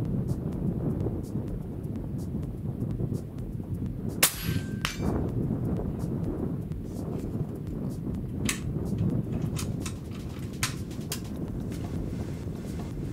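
A Hatsan Hercules .30 calibre PCP air rifle fires a single shot, a sharp crack about four seconds in. About half a second later comes the faint ring of the pellet striking a steel silhouette target downrange. Wind rumbles on the microphone throughout.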